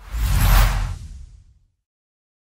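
An intro sound-effect whoosh with a deep low rumble. It swells to a peak about half a second in and fades away by about a second and a half.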